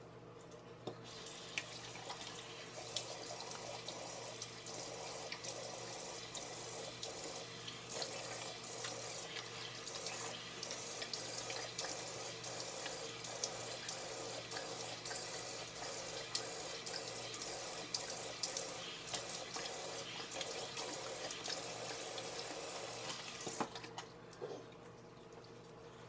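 Bathroom faucet running into a sink, with irregular splashes as water is scooped up in cupped hands and splashed onto the face to rinse off soap. The tap comes on about a second in and is turned off just before the end.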